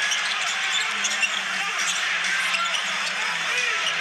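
Steady arena crowd noise during live basketball play, with a basketball bouncing on the hardwood court.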